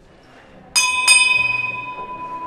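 A small hand bell on a procession throne is struck twice, about a third of a second apart, and its clear metallic tone rings on afterwards. This is the signal to the bearers to lift or halt the throne.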